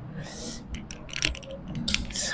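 A short breathy hiss, then a run of quick, light clinks and ticks starting about two-thirds of a second in, from bangles on her wrists knocking together as she bends over.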